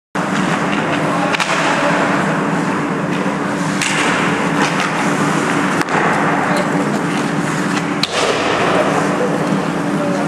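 Ice hockey play in an indoor rink: a steady scraping of skate blades on the ice over a low, steady hum, with a few sharp clacks from sticks and puck.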